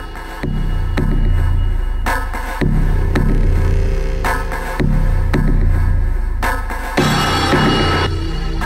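Electronic drum-and-synth loop from a Reason patch, its sound changing abruptly about every two seconds as it is switched on the beat between mixer channels that carry different effects: Scream 4 distortion, unison, reverb and vocoder.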